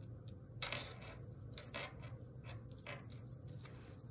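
Tarot cards being shuffled and handled, a few short, irregular papery flicks and taps.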